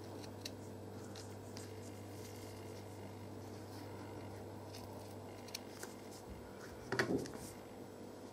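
Small scissors snipping folded felt in faint, scattered clicks. Near the end comes a louder short clatter as the scissors are set down on the table.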